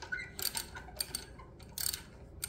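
Socket ratchet wrench clicking in several short, irregular bursts as its handle is swung back and forth to tighten a nut, the longest burst near the end.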